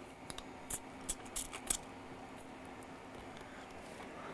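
Quiet handling noises at a repair bench: about half a dozen short clicks and rustles in the first two seconds as a cotton swab and isopropyl alcohol are readied for cleaning flux off a logic board. After that comes a faint, steady low hum.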